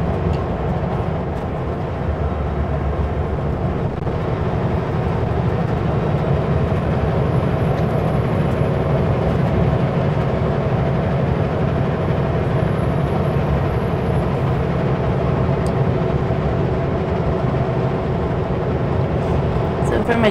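Kenworth W900L semi truck's engine and road noise heard from inside the cab, a steady unbroken drone while driving.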